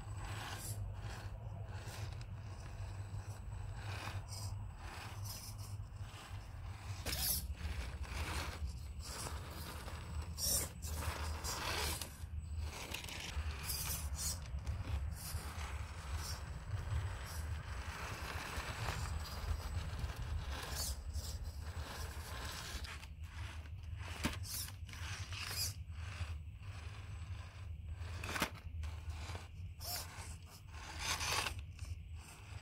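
Brushed 4WD RC rock crawler (Axial Capra 1.9) running slowly over rock: a steady low drivetrain drone under irregular scrapes and clicks as the tyres and chassis rub and knock against the stone, a little louder in stretches.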